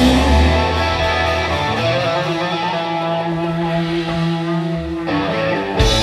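Live rock band playing an instrumental passage. After about a second the drums drop out and held guitar chords ring on their own, then the full band with drums and cymbals comes back in near the end.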